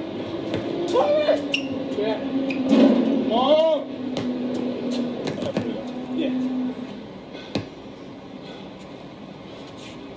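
Men's voices talking during the first few seconds, with scattered sharp knocks of a basketball bouncing on an outdoor court. The voices fade after about four seconds, and a single louder bounce comes about three-quarters of the way through.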